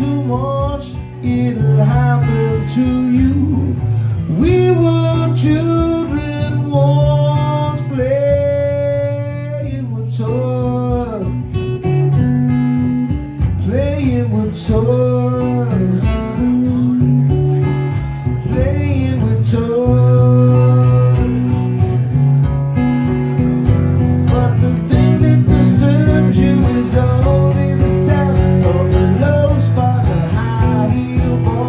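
Cole Clark acoustic guitar played in a blues style, with melody notes bent up and down over repeating low bass notes.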